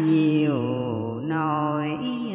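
A single voice chanting Hòa Hảo Buddhist scripture verse in a drawn-out, sung recitation style, holding long notes that drop in pitch and then rise again.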